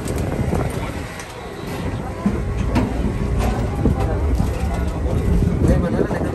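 Low, steady rumble of the docked passenger ferry's engines running, with indistinct voices of passengers and a few light knocks.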